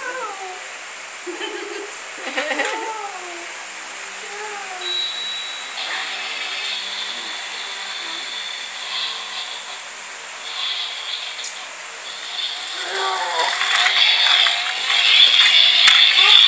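Small battery-powered toy car whirring with a thin high whine, growing louder over the last few seconds.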